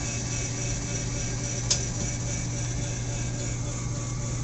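Electric actuator lowering a powered floor hatch on a motor yacht: a steady motor hum, with a single click about a second and a half in.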